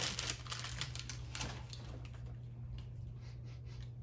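Light rustling and crinkling of a paper fast-food sleeve handled in the hands, with faint small clicks, busiest in the first second and a half.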